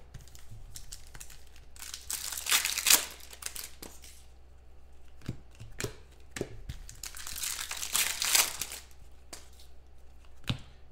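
Glossy Panini Prizm basketball trading cards being handled: cards slid and flicked against one another as they are turned over. There are rustling, crinkling bursts about two seconds in and again near eight seconds, with light clicks in between.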